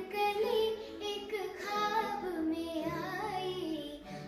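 A young girl singing a Hindi film song, her voice gliding and bending between notes, over a backing track whose steady low notes change about three seconds in.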